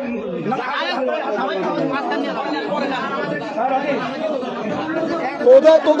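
Several men's voices talking over one another in a crowded room, a steady murmur of overlapping speech with no one voice leading until a single louder voice breaks in near the end.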